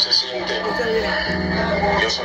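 A recorded phone call, a voice played from a mobile phone held up to a microphone and amplified through a PA speaker, over background music with long held notes.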